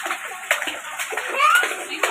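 Small children slapping and splashing the water of a shallow inflatable paddling pool, in a run of quick splashes. A child's voice gives a short rising squeal about halfway through, the loudest moment.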